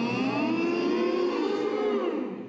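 A man's voice holding one long vowel in a voice exercise, its pitch slowly rising and then falling.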